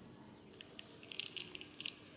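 A quick run of faint, light clicks or taps about a second in, over a steady low hum.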